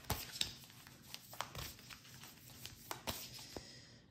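Cards being handled on a wooden tabletop: light sliding rustles with a string of short taps and clicks, the loudest just after the start.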